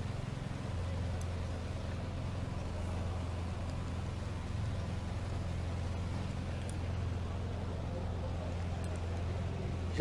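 Engine of a silver 2011/2012 Volkswagen CrossFox idling steadily: a constant low hum with an even hiss over it.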